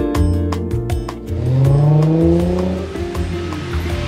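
Background music for about the first second, then a car engine accelerating, its pitch rising smoothly over about a second and a half.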